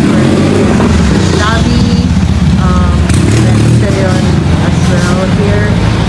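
Speech in short phrases over a steady low rumble.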